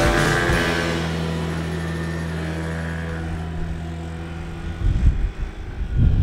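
Moped engine pulling away, then running steadily as it moves off and slowly fades. Near the end, wind buffets the microphone in gusts.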